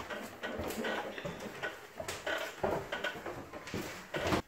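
Footsteps and irregular knocks on the metal floor of a helicopter's hollow cargo cabin, a few sharp thuds spaced unevenly.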